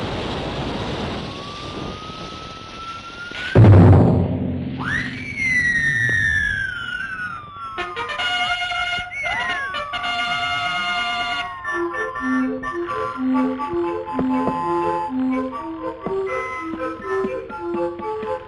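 Cartoon sound effects of rockets launching: a rushing hiss with a slowly rising whistle, then a loud bang about three and a half seconds in. Sliding whistle tones fall away after the bang, and a brassy band tune with a bouncing bass takes over in the second half.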